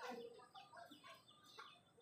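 Faint, scattered short bird calls and clucks over a quiet background.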